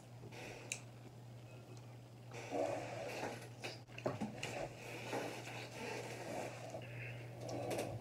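Close-miked chewing of a sauce-dipped cucumber slice, with mouth sounds, starting about two seconds in, over a steady low electrical hum.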